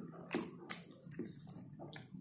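Close-up eating sounds: a few short, wet mouth smacks while a person chews and mixes rice with the fingers, about two a second.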